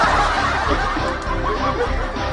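A person laughing in short snickers and chuckles, over background music with a steady low beat.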